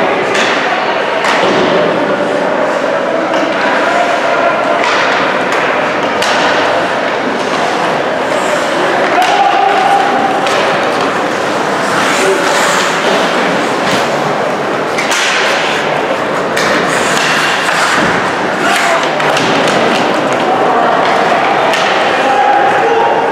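Live ice hockey play: repeated knocks and thuds of sticks, puck and players against the boards, over a steady noisy bed with voices shouting across the rink.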